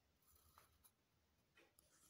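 Very faint pencil scratching on paper as a line is drawn along a ruler, with a couple of short strokes.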